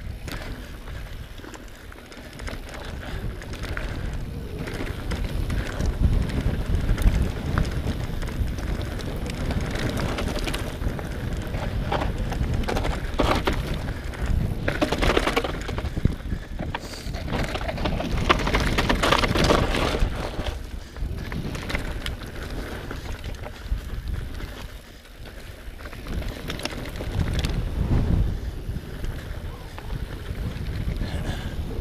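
Mountain bike riding down dry, rocky dirt singletrack: tyres rolling over dirt and stones and the bike rattling over the bumps, with wind noise on the microphone. The noise rises and falls with the roughness of the trail.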